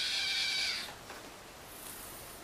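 Kitten giving one drawn-out, high, steady vocal sound that stops a little under a second in.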